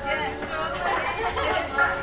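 Chatter of a small group: several people talking at once, their voices overlapping.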